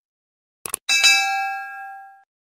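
A quick double click, then a notification-bell ding that rings on in several clear steady tones and fades away: the sound effect of a subscribe-button animation.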